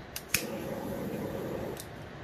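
Steady hiss of rain, with two short sharp clicks in the first half-second.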